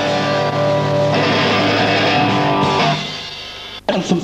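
Rock band's closing chord on electric guitar, held steady and ringing out, then fading away about three seconds in as the song ends. The sound drops out briefly just before the end.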